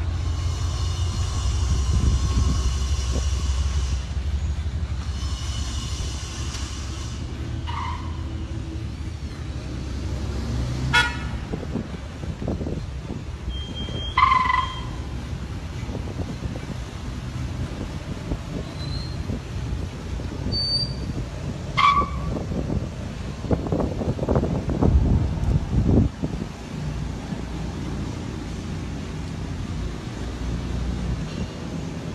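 Vehicles driving past one after another with their engines running, and a series of short car-horn toots. A longer, high horn sounds twice in the first seven seconds, and one engine is louder a little over twenty seconds in as it passes.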